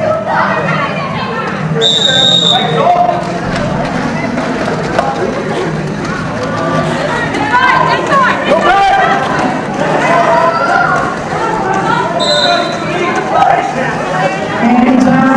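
Referee's whistle blown twice, a longer blast about two seconds in and a shorter one near the end. Underneath are many overlapping shouting voices from skaters and spectators, and a steady low rumble of roller-skate wheels on a concrete floor.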